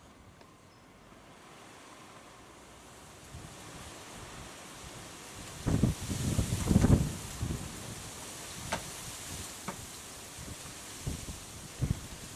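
Wind buffeting the microphone, gusting hardest just past the middle, with a few light knocks and clicks from plastic hive parts being handled.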